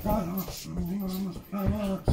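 A dog growling and whining in play while worrying a chew treat.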